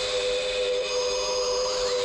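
Electronic sci-fi sound effect for the alien UFO in flight: a steady whine of several held tones, with higher tones slowly sweeping up and down above them.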